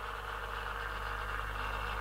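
Steady low hum and faint whir of a motorized display turntable slowly rotating a pair of dress shoes.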